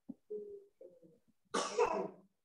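A faint voice comes over the video-call audio, then a short, louder, rough burst about one and a half seconds in.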